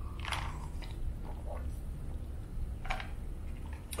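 Close-miked swallowing as a man drinks soda from a plastic cup: three separate gulps, one just after the start, one about a second and a half in, one near the end.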